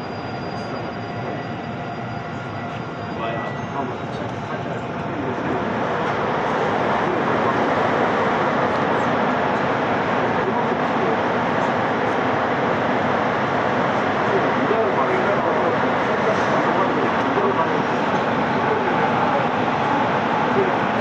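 Inside a Korail Gyeongchun Line electric commuter train coming to a stop at a station. Faint whining tones fade out about three seconds in as it halts, then a steady rushing noise swells and holds while the train stands at the platform.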